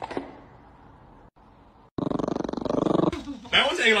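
A dog growling: a rough, rapidly pulsing growl starting about two seconds in and lasting about a second, then a voice speaking.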